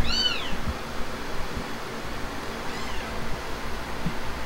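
A cat meows twice: a short, high-pitched mew that rises and falls right at the start, then a fainter one about three seconds in.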